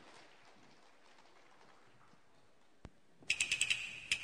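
Faint room tone for about three seconds, then near the end a quick run of sharp cymbal strikes as the Cantonese opera percussion starts the piece's introduction.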